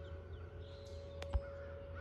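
Distant Whelen outdoor warning siren sounding one faint, steady tone for a tornado siren test, with a sharp click and a short knock a little past halfway.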